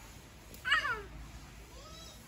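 A single short animal call, falling in pitch, about three-quarters of a second in, followed by a fainter call near the end.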